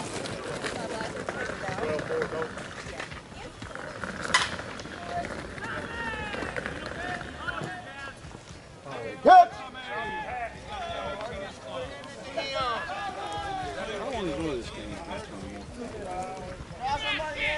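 Voices of softball players calling out across the field during a live play, loudest about nine seconds in, with a single sharp crack about four seconds in.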